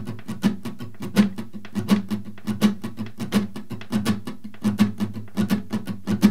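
Steel-string acoustic guitar with a capo on the second fret, strummed up and down in a swung rhythm: a steady run of quick strums with a louder accented stroke recurring about every three-quarters of a second.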